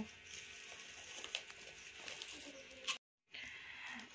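Faint steady background noise with a few light clicks, broken about three seconds in by a moment of dead silence at an edit.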